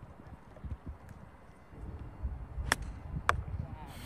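Low rumble of wind on an outdoor microphone, growing louder about halfway through, with two sharp clicks about half a second apart near the end.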